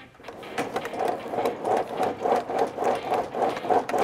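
Two CLIMBR vertical climbing machines worked at a fast pace, a steady mechanical clatter of about three strokes a second from the sliding handles and pedals.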